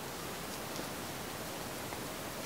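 Steady faint hiss of background noise: room tone and microphone hiss with no distinct sound in it.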